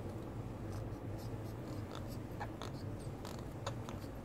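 Faint, irregular scratchy clicks and rubbing from small parrots moving and being handled on a rope perch, over a steady low hum.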